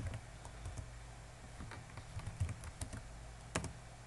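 Typing on a computer keyboard: irregular, scattered keystrokes, with one louder keystroke a little past three and a half seconds.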